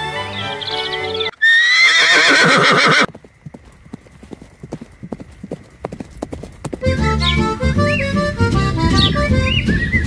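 Background music stops for a loud horse whinny with a rising pitch, followed by hooves clip-clopping in a steady rhythm for about four seconds. The music comes back near the end.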